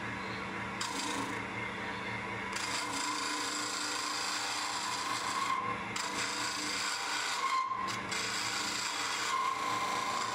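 Wood lathe running with a steady motor hum while a hand-held turning tool cuts a tenon on a spinning maple burl blank, a continuous shaving hiss that eases off and comes back a few times.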